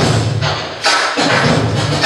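Hip-hop music with a heavy, punchy beat playing loudly over speakers.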